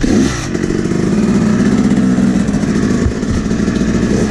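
Two-stroke dirt bike engine ridden at low speed, with a brief rise in revs right at the start and then a fairly steady note.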